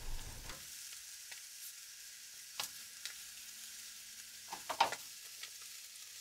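Halloumi cheese sizzling faintly in a dry nonstick frying pan, a soft steady hiss, with a few light clicks of the metal tongs against the pan about two and a half seconds in and again near the end.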